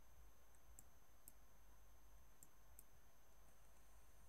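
Near silence: a low steady hum with about four faint, sharp computer mouse clicks spread across it.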